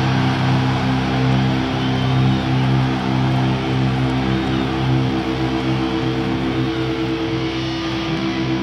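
Heavy metal band playing live, with distorted electric guitars holding long sustained notes.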